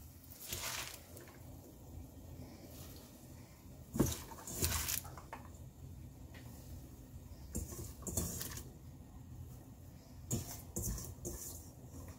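Handfuls of chopped spinach being dropped into a steel pot of boiling water: several brief rustles and soft wet landings a few seconds apart.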